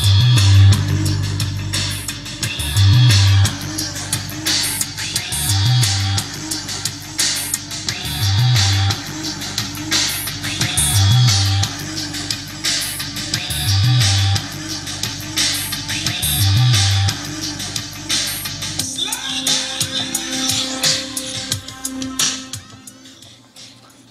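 A song with guitar playing through vintage MCS bookshelf speakers, recorded across the room: a deep bass note comes about every three seconds. About two-thirds through the bass notes stop and the music thins and fades down near the end.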